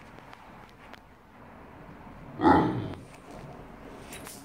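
A Great Dane gives one short, deep bark about two and a half seconds in, a jealous protest at the small dog getting attention.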